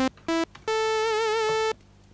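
Roland JD-Xi synthesizer on its initial patch, a plain sawtooth tone. It plays two short notes climbing in pitch, then holds a higher note for about a second that takes on a vibrato and cuts off sharply.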